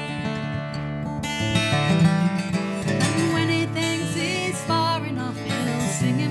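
Steel-string acoustic guitar strummed in a folk song, changing chord about a second and a half in, with a woman's voice singing over it in the second half.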